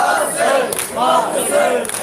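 A crowd of men chanting loudly in unison, a mourning chant of a Muharram procession: short rising-and-falling calls repeated about twice a second.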